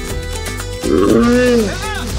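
A sudden loud roar about a second in, lasting under a second, over plucked-guitar background music, then startled human yells near the end.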